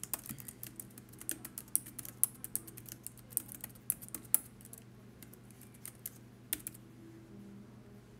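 Typing on a keyboard: a quick run of key clicks for about four and a half seconds, then a few scattered taps.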